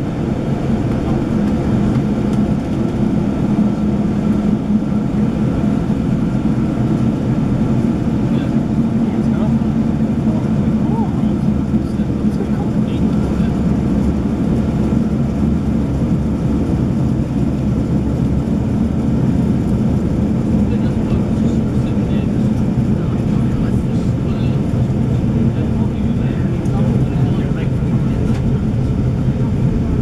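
Steady rumble of a railway passenger coach running at speed, heard from inside the carriage.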